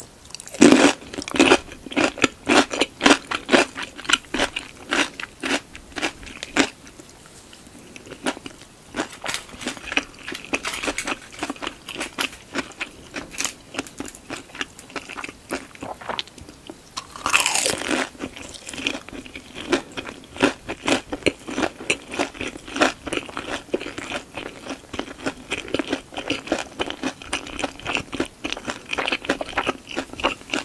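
Close-miked eating sounds: a person biting and chewing crisp food, with many sharp crunches during the first six seconds. The chewing then turns softer, with another strong crunch burst a little past the halfway point and steady chewing after it.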